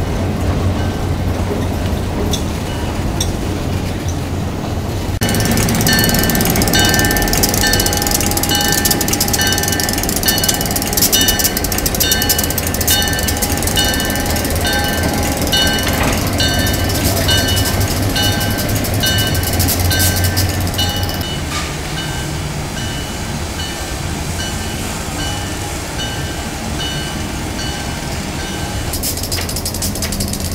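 Railroad cars rolling past on the rails, over the steady rumble of an EMD SW8 switcher's diesel engine. From about five seconds in, the locomotive's bell rings steadily, a little under two strokes a second, and it stops about twenty seconds in, leaving the engine running more quietly.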